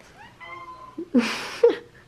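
Domestic cat meowing: a soft call that rises and falls in the first second, followed by a short breathy sound about a second in.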